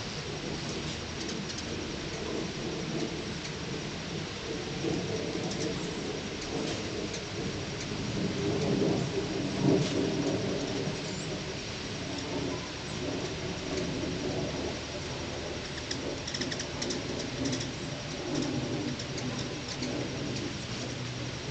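Hummingbirds' wings humming as several birds hover and dart around hand-held feeders, the low buzz swelling and fading as they come close, loudest about halfway through. Short high chirps from the birds come and go over it.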